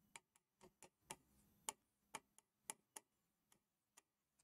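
Faint, irregular clicks of a stylus tip tapping on an interactive display's glass while handwriting, about ten in all.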